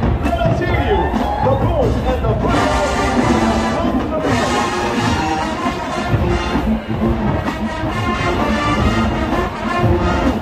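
Jackson State University's marching band playing: massed brass chords swell in about two and a half seconds in over drums and carry on loudly, with crowd voices underneath at first.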